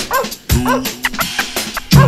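Vinyl scratching on a turntable over a hip-hop beat: a run of short scratches that sweep up and down in pitch, with a held bass note coming in about halfway through.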